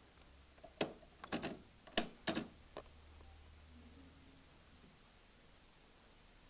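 A quick run of sharp plastic clicks and knocks, about six in two seconds, as Lexmark 23 and 24 ink cartridges are pushed into an inkjet printer's cartridge carriage and seated, over a faint low hum.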